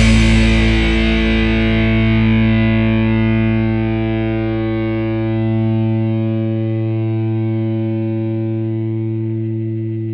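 Distorted electric guitar letting the song's single chord ring out after the final hit. It sustains as one steady chord and slowly fades; its bright top end dies away in the first few seconds.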